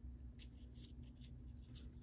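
Near silence with a low steady hum and a scatter of faint small clicks, from fingers handling a small plastic doll dress form.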